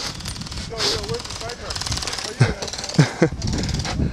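Airsoft guns firing in rapid full-auto bursts, a fast mechanical rattle, with distant shouting voices.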